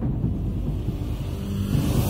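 Sound design of a TV channel's animated logo intro: a deep low rumble with faint steady tones, and a whoosh beginning to swell near the end as the theme music comes in.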